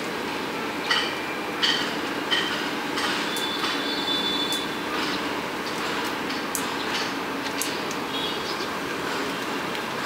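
Steady outdoor background noise with a few short, high chirps and clicks over it, several in the first half.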